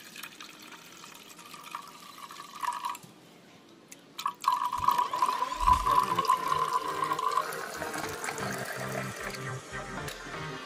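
Water pouring from one glass beaker into another, splashing into the liquid already in the lower beaker: a thin trickle at first, a short pause about three seconds in, then a heavier stream. It is the ash-laden wash water being poured off the burnt electronic scrap.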